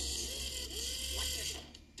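Cartoon soundtrack heard through a TV speaker: a low electric buzz with a character's voice exclaiming in a rising-and-falling glide, then a brief drop-out near the end.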